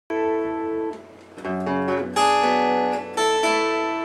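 Acoustic guitar playing the opening chords of a song. About four chords are strummed, each left to ring.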